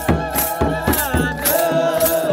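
Ethiopian Orthodox liturgical chant: a group of voices singing over a kebero hand drum beaten about four times a second, with high jingling rattles on the beats. The singing swells into a strong, wavering line near the end.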